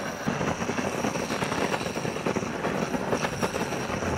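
Handheld gas weed-burner wand burning with a low, lazy flame: a steady rushing noise with an irregular flutter.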